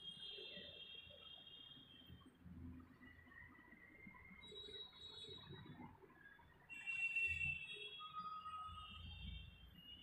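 Faint bird calls: several high, drawn-out chirps, the loudest cluster about seven seconds in.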